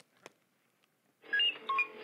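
Electronic beeps and tones from the sound-effect player built into a homemade robot costume, starting about a second in after a near-silent pause.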